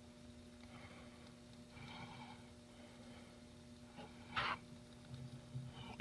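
Faint trickle of automatic transmission fluid poured from a plastic jug into a plastic funnel, with a short louder scrape or knock about four seconds in.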